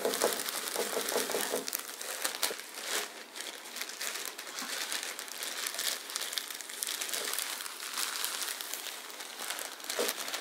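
Thin plastic bag crinkling while wood-shaving bedding is poured and shaken out of it into a clear plastic case, the shavings rustling as they fall; loudest in the first half.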